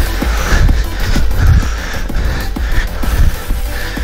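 Electronic background music with a steady beat and heavy bass.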